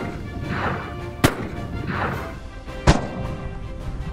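Two sharp gunshots from a black-powder, percussion-cap duck foot pistol, about a second and a half apart, over background music.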